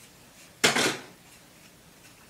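A single short clatter of hard plastic handling noise about halfway through, as the rotating-barrel curling iron is gripped and moved while hair is wound onto it.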